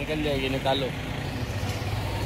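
Motorcycle engine running with a steady low rumble, with voices talking during the first second.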